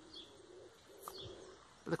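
Faint birds: a low, soft cooing and a couple of short high chirps.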